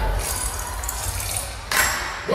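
A break in the dance routine's music track: a lull with rustling, rattly noise from the hall and a low rumble, and a short sharp noise burst near the end.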